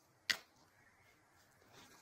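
Near silence, broken once by a single short click about a third of a second in.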